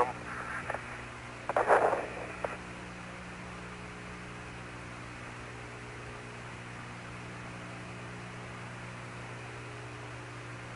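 Open radio channel: steady hiss with a low, even hum, broken by one short burst of sound about a second and a half in.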